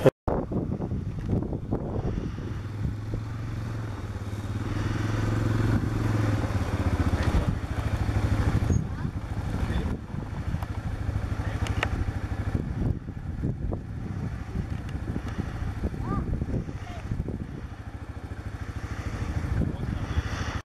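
An engine running, loudest from about four to seven seconds in and then fading, with gusty wind noise on the microphone.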